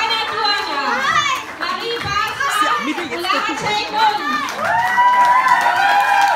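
Many children's voices chattering and calling out at once, with one long drawn-out call starting near the end.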